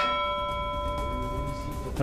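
A single struck, bell-like electronic chime that starts sharply and rings on in several steady tones for nearly two seconds: a news bulletin's transition sting between stories.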